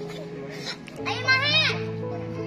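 A child's high-pitched squeal of play, rising and falling, a little under a second long starting about a second in, over background music with steady held notes.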